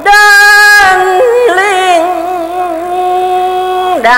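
A single high voice chanting verse in long held notes, with a wavering, melismatic passage between them: the melodic recitation (đọc giảng) of Hòa Hảo scripture.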